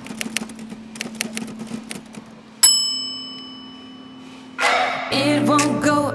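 A single bright bell-like ding about two and a half seconds in, ringing out and fading over about two seconds. Music with a singing voice comes in near the end.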